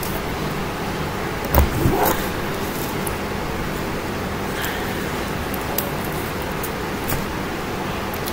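Steady room hiss, with a brief knock and rustle about one and a half seconds in as a plush teddy bear is pushed down into a mug packed with paper shred.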